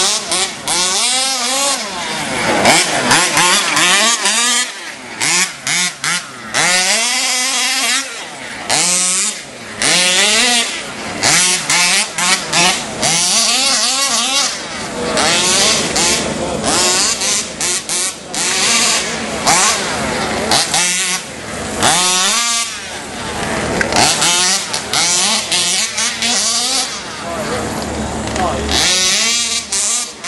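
Several 1/5-scale RC off-road racing cars' small two-stroke petrol engines revving up and down, overlapping, their pitch rising and falling over and over as they race around the track.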